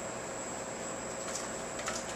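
Steady ventilation noise of a commercial kitchen, with two faint light clicks in the second half.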